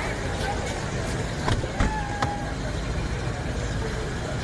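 An SUV running and moving off amid outdoor voices and a steady rushing background, with two sharp knocks about two seconds in.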